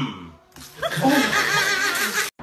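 A person laughing loudly in a high pitch, starting about half a second in.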